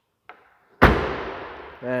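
The trunk lid of a 2022 Dodge Charger being shut: a faint tap, then one solid slam a little under a second in that rings on briefly as it dies away.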